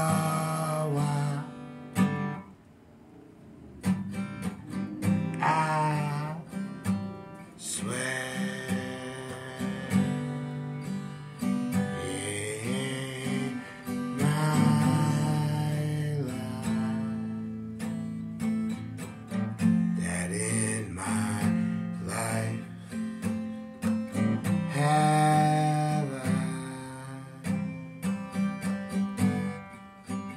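Acoustic guitar playing a slow accompaniment while a man sings long, drawn-out phrases over it. The music drops back briefly about two seconds in before the guitar and voice pick up again.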